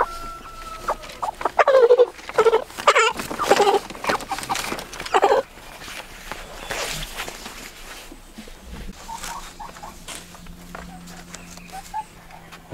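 Chickens squawking in a plastic transport crate as they are caught by hand, a run of loud harsh calls over a few seconds, then quieter.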